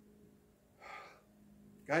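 A man's audible breath drawn in, once and briefly, about a second in, during a pause in his talk; his speech starts again near the end. A faint steady low hum of room tone lies under it.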